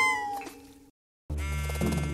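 Cartoon soundtrack: a pitched whine glides down in pitch and fades out over the first second, then cuts off. After a short break of silence, music starts.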